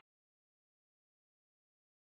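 Silence: the soundtrack is empty.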